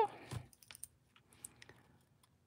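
A few faint, scattered light clicks and taps from small craft tools being handled: metal tweezers at work on die-cut paper and a plastic liquid-glue bottle set down on the work mat.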